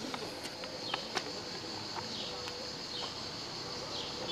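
A man chewing a mouthful of fettuccine close to a clip-on microphone, with a few soft mouth and fork clicks in the first second or so, over a steady high-pitched background drone.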